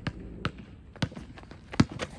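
Basketball being dribbled on an outdoor court: about four bounces, unevenly spaced, the loudest near the end.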